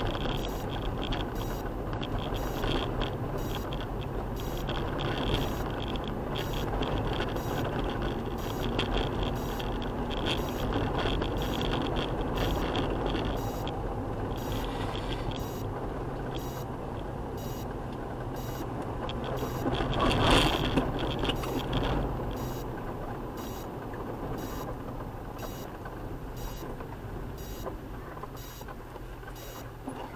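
Vehicle driving on a dirt road, heard from on board: a steady engine drone with tyre and road rumble. There is a brief louder swell about two-thirds of the way through.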